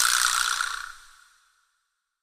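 An edited-in sound effect: a sudden hissing burst with a ringing tone in it, fading away over about a second and a half.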